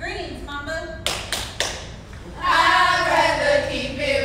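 A short vocal call, then three sharp claps or stomps about a quarter second apart, then from a little past halfway a group of women chanting in unison, as in a stepping routine.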